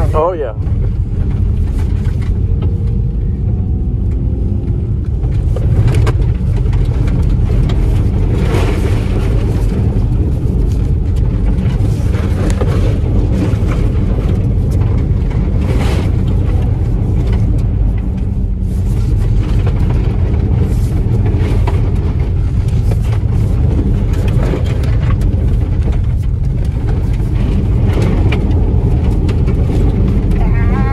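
Cabin noise of a car driven fast on a wet dirt and gravel surface: a steady low rumble of tyres on the loose, slick surface, with frequent sharp ticks of gravel striking the underbody and wheel wells.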